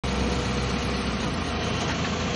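Backhoe loader's diesel engine running steadily, heard from inside the operator's cab.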